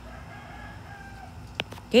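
A rooster crowing faintly in the distance, one long call that tails off slightly at its end. A stylus taps on the tablet screen once near the end.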